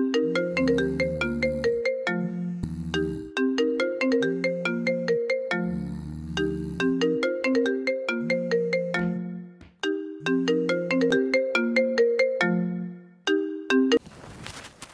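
Mobile phone ringtone playing a melodic tune of quick notes over a bass line, repeating in phrases with short breaks, until it cuts off as the call is answered.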